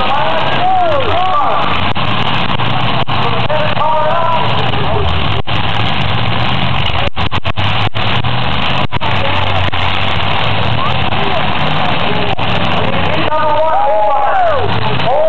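Demolition derby cars' engines running and revving loudly in a steady mass of noise, with a voice rising over it near the start and again near the end.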